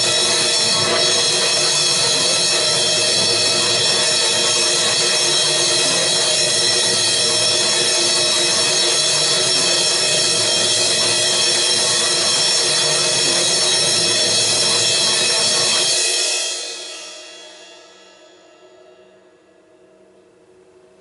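Cymbals played in a continuous fast roll with sticks, making a loud, dense, steady wash full of ringing tones. About sixteen seconds in the playing stops and the ring dies away over a couple of seconds, leaving a faint hum of a few tones.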